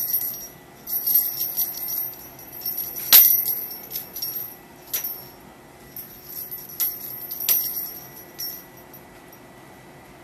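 Small jingle bell on a cat toy jingling in short, repeated bursts of shaking, the loudest about three seconds in, dying away near the end.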